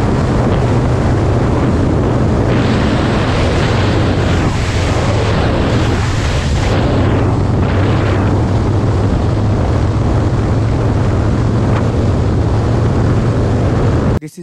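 Harley-Davidson Roadster's 1202 cc V-twin engine running steadily at cruising speed, heard from the rider's helmet under heavy wind rush on the microphone. The wind rush swells for a few seconds in the middle.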